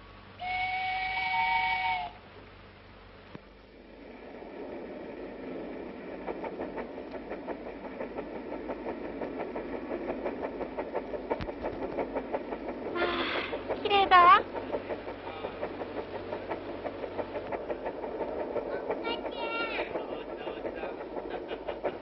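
Steam train whistle sounding one steady blast of about a second and a half. The train then starts running with an even, rhythmic clatter that builds up. About fourteen seconds in, a short, louder whistle with a bending pitch cuts through the clatter.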